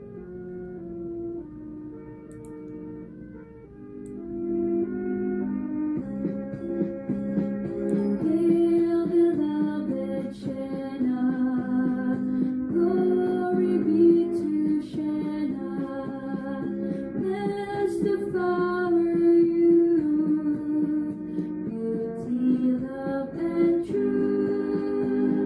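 A school song sung with instrumental accompaniment. It opens softly with held notes, then grows fuller and louder about four seconds in.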